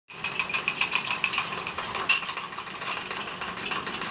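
Spoon beating instant coffee and sugar in a small ceramic cup, clinking rapidly against the cup's sides about seven times a second. The strokes are loudest for the first couple of seconds and then go softer.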